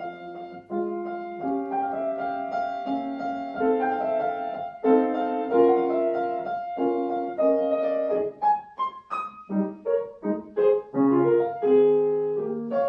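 Piano playing a solo interlude in a classical art-song accompaniment. It holds chords for the first eight seconds or so, then plays a string of short, separated notes.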